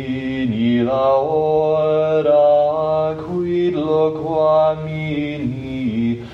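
Sung liturgical chant in slow, drawn-out notes that step between a few pitches.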